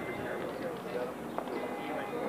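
Indistinct chatter of several voices, with one sharp click about one and a half seconds in.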